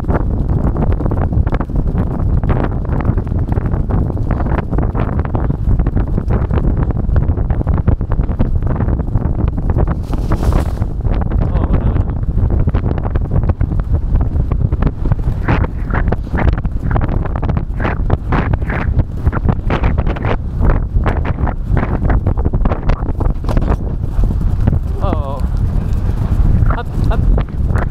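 Wind buffeting a helmet-mounted microphone over the hoofbeats of racehorses galloping on turf. A few short vocal sounds come through in the second half.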